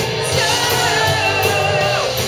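Heavy metal band playing live: a male lead singer sings held, wavering notes over distorted electric guitars, bass guitar and drums with cymbals.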